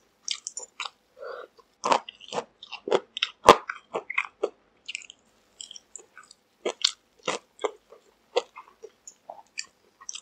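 Crunching bites and chewing of McDonald's crispy fried chicken: an irregular run of crisp crunches from the breaded skin, the sharpest about three and a half seconds in.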